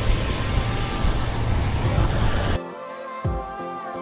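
Steady wind rumble and hiss on a small action-camera microphone, cut off suddenly about two and a half seconds in by background music with pitched lines and a slow, thudding beat.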